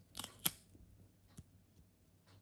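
Silicone candle mold being peeled off a soy wax candle: a brief crackle as the mold pulls free of the wax, ending in a sharp snap about half a second in, then one faint click.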